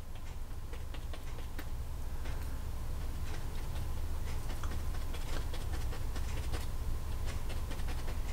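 A paintbrush dabbing and brushing oil paint onto a stretched canvas, heard as faint, irregular little taps and scratches over a steady low background hum.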